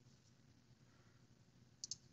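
Near silence, then two quick, faint clicks close together near the end.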